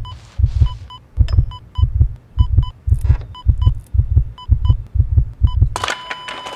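Heartbeat sound effect: deep double thumps, lub-dub, repeating steadily about every 0.6 seconds. Short high electronic beeps like a hospital heart monitor's run between them.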